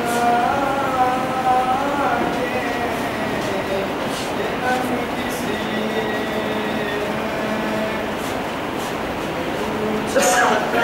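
A schoolboy's voice chanting a naat unaccompanied, with long held, wavering notes near the start, over steady background noise.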